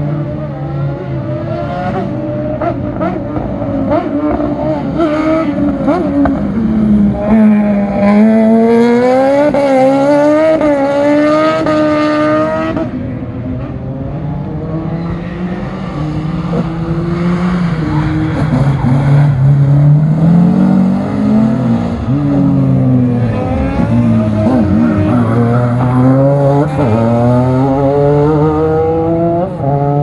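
Race car engines revving hard on a circuit, the pitch climbing and dropping again and again with throttle and gear changes as cars come through a corner. The engines are loudest in the first half and again through most of the second half.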